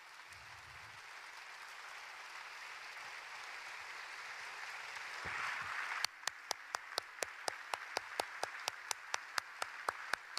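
Congregation applauding, the applause growing over the first six seconds. After that, sharp single claps close to the microphone come about four a second over the continuing applause.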